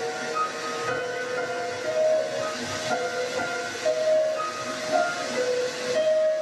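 Piano played slowly from the clip's soundtrack: held notes that change pitch about once a second, over a steady hiss.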